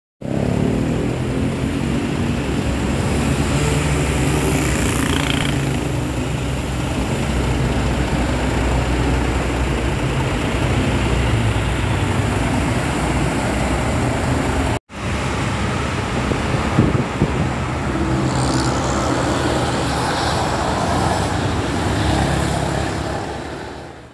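Heavy road traffic: intercity buses and motorcycles passing close by, engines running steadily under a constant noise of traffic. The sound drops out for an instant about fifteen seconds in.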